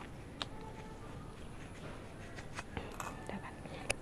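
Quiet handling sounds: a few faint clicks and soft rustles as a snake plant's root ball is worked out of a small pot and loose potting soil is crumbled away by hand.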